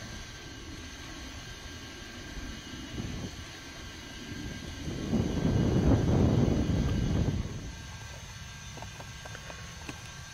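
Low rumbling noise of wind on the microphone, swelling into a strong gust about five seconds in that lasts a couple of seconds, then settling back.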